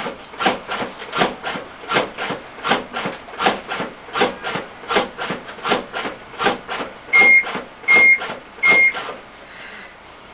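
AutoPulse load-distributing band chest-compression device cycling on a CPR manikin, giving a rhythmic mechanical rasp a little under twice a second. Three loud beeps come about seven seconds in, then the compressions stop, as in a pause for ventilation.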